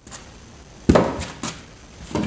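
A single sharp knock about a second in, followed by two lighter knocks, with a faint background hum.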